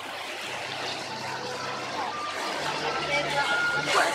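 River cruise boat's engine running with a steady low hum under the rush of water along the hull, with passengers chattering faintly in the background.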